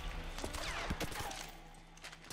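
A film soundtrack fading out: a few sharp cracks or knocks over a low hum, dying away.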